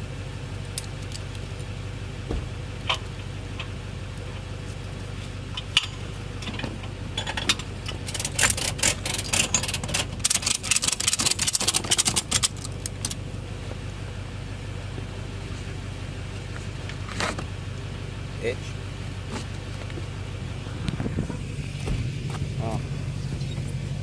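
A steady low engine hum of a vehicle idling, with a quick run of metallic clinks and rattles from about eight to thirteen seconds in, the sound of tow straps and hooks being handled and fastened to the car's rear suspension. Scattered single clicks come before and after.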